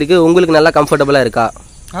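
A man talking for about a second and a half, then a brief pause, over a faint steady high chirring of insects.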